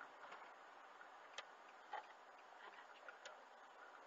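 Near silence: faint steady in-car road hiss picked up by a dashcam, with a few light, irregular clicks.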